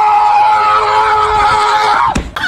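A cat yowling in warning: one long, loud, steady call with a slight fall in pitch, cut off as the cat lunges.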